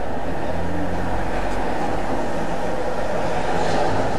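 Steady low rushing noise with a faint hum, even and unchanging throughout, with no distinct events.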